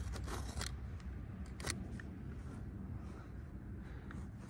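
Utility knife blade slicing through carpet: a few short, faint cutting strokes in the first second or so and one more a little before the middle, over a low steady background hum.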